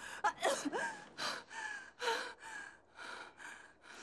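A person gasping and panting in quick, short breaths, about two a second, some with a short voiced groan that falls in pitch.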